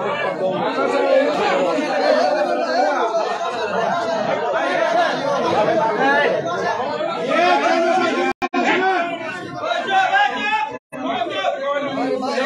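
Several people talking over one another at the same time. The sound cuts out completely for a split second twice, about eight and eleven seconds in.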